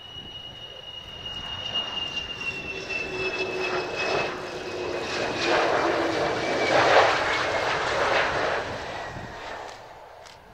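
McDonnell Douglas F-4EJ Kai Phantom II's twin J79 turbojets on a low landing approach, passing close: a high whine that falls slowly in pitch over dense jet noise. The noise builds to its loudest about seven seconds in, then fades near the end.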